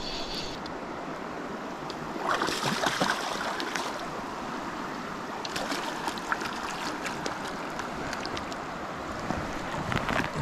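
Steady rush of river current, with splashing from a hooked trout thrashing at the surface as it is played in, loudest about two to three seconds in and again around six seconds.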